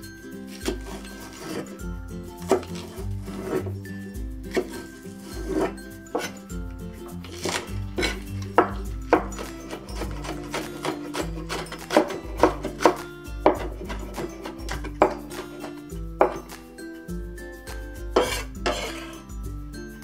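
Chinese cleaver chopping green onions on a wooden cutting board: a run of sharp knocks of the blade on the wood at an uneven pace, clustering in quicker bursts in places, over background music with steady low notes.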